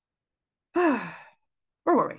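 A woman's wordless sigh: one voiced breath falling in pitch, about three-quarters of a second in, followed near the end by a second, shorter falling vocal sound.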